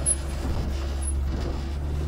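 Outboard engine running steadily under way, heard from inside the boat's hardtop cabin as a steady low hum with a faint higher tone over it. The engine seems to be running well.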